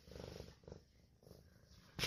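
Domestic cat purring faintly in a few short stretches, close to the microphone.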